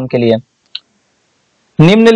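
Speech breaks off into a pause broken by a single short, sharp click, then speech resumes near the end.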